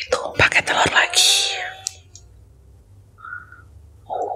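A woman talking close to the microphone for about the first two seconds, then quiet with a faint short sound about three seconds in.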